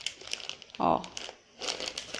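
Plastic bag of dried carioca beans crinkling and rustling as it is gripped and turned in the hand, with a brief lull just after the middle.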